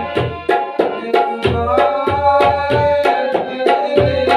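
Tabla played in a steady rhythm of about four strokes a second, with deep booming strokes from the bass drum (bayan), over a harmonium holding sustained notes.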